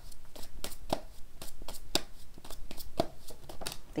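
Tarot deck being shuffled by hand: a quick, even run of crisp card snaps, about four to five a second.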